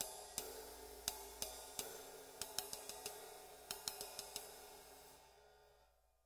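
Paiste flat ride cymbals played with a wooden drumstick in a light ride pattern: dry, irregular stick clicks over a low wash that dies away near the end.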